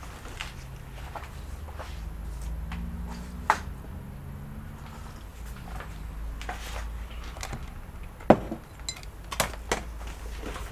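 Steady low hum with a few light clicks and knocks from handling on a workbench. The loudest knock comes about eight seconds in, followed by two quicker clicks near the end.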